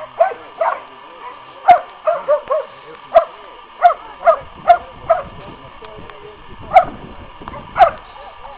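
Posavac hound barking: about a dozen short, high-pitched barks in an irregular series, with a pause of over a second past the middle.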